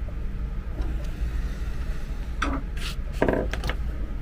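Screwdriver turning a screw into a plastic charger case, then a few sharp clicks and knocks between about two and a half and three and a half seconds in as the tool and case are handled, over a steady low hum.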